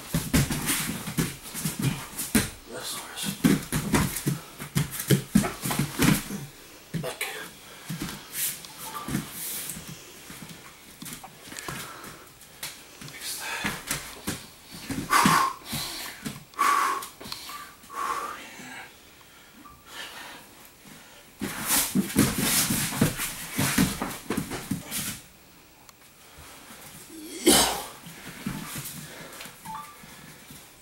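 Grapplers scuffling and thudding on a foam mat, with heavy panting breaths. The rustling and thumps come in bursts, busiest at the start and again past the middle, with one sharp thud near the end.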